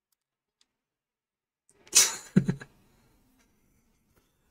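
A man's brief vocal sound about two seconds in: a breathy rush, then a short low voiced grunt, all over in under a second, with digital silence around it.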